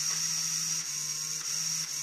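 A small LEGO Power Functions electric motor running steadily through its plastic gearing, with a high whine and a low hum. The hum drops out briefly a few times as the polarity-switch lever is worked.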